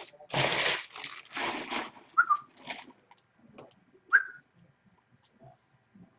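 Baseball card packs being torn open and handled, with two rustling bursts of wrapper and cards in the first two seconds. Two short high chirps that drop slightly in pitch come about two and four seconds in, followed by faint small handling sounds.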